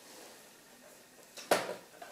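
Faint handling noise, then a single sharp knock with a brief ring about one and a half seconds in: the replacement laptop LCD panel being flipped up and knocking against the laptop's display lid frame.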